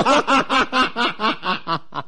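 A person laughing: a quick run of about ten short laughs, five or six a second, growing weaker and stopping near the end.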